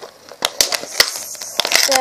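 Plastic bottle crinkling and crackling in irregular sharp clicks as it is twisted and torn to rip its bottom off.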